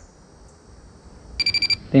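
Minelab Pro-Find 35 handheld pinpointer beeping rapidly at a steady high pitch from about one and a half seconds in, signalling a metal target in the soil.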